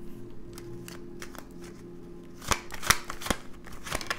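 A deck of tarot cards being shuffled by hand: a few light card clicks, then a quick run of sharp snapping shuffles in the second half. A faint steady hum sits underneath.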